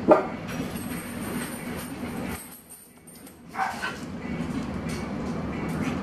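Short yelping calls, one right at the start and another about three and a half seconds in, over a steady low hum that drops out for about a second midway.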